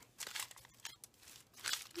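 Small plastic bags of beads crinkling against tissue paper as hands shuffle through them, in a few faint, irregular rustles.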